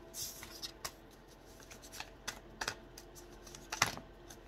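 Tarot cards being handled: a scatter of light snaps and taps as cards are drawn from the deck and set down on the table, about six in all, the loudest near the end.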